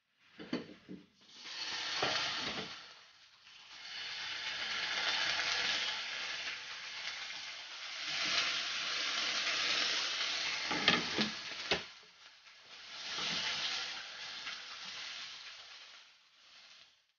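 Tomato slices sizzling in hot oil in a frying pan, the hiss coming in several swells as slices go in and are pushed around. About eleven seconds in there are a few sharp clacks of the plastic spatula against the pan.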